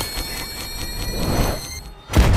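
Electronic beeping from a Stark Industries missile: a steady high tone with rapid ticks about six a second, over a low whoosh that swells about a second and a half in, then drops off sharply right at the end.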